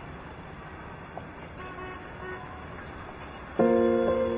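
Low city street background with distant traffic, then soft background music enters near the end with loud sustained chords.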